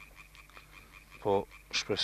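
A man's voice in a pause of speech: a single short spoken word a little over a second in, and the start of the next word near the end, over a quiet background with a faint steady high tone.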